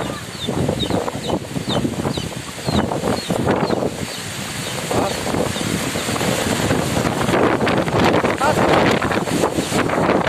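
Strong wind gusting over the phone's microphone, growing louder and more buffeting in the second half. Faint short high chirps come about twice a second in the first few seconds.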